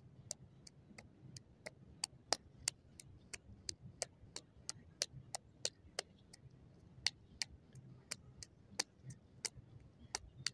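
Light, sharp slaps of knees striking open hands during high-knee running in place, a steady rhythm of about three a second.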